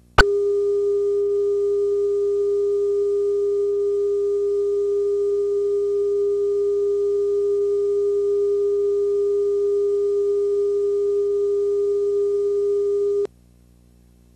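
Steady line-up test tone, one unwavering mid-pitched beep, played with colour bars at the head of a videotape segment to set audio levels. It starts with a click just after the start and cuts off suddenly about a second before the end.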